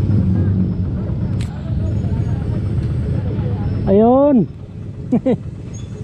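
Motorcycle engine idling with a steady low rumble. About four seconds in, a man's voice calls out once with a falling pitch, followed by a couple of short vocal sounds.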